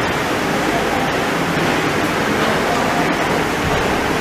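Steady, fairly loud hiss of background noise with no distinct event in it: room and recording noise.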